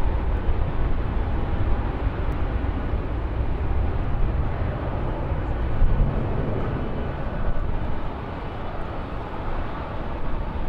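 Jet engines of a Southwest Airlines Boeing 737 rolling along the runway: a steady low rumble with a broad rush over it, easing slightly in the last couple of seconds.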